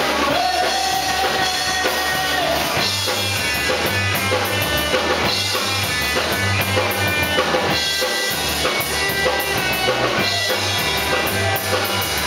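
Rock song played live, with guitar over drums; a pulsing bass line comes in about three seconds in.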